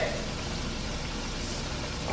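Chicken pieces frying in a pan of hot grease, giving a steady hiss with no pauses.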